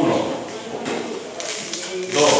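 Indistinct talk of several people in a room, loudest at the start, with a few short light clicks or rustles in the second half.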